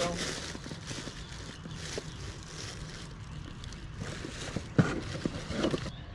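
Plastic DVD and CD cases being handled and sorted, with small clicks and rustles and one sharper clack near the end, against faint background voices.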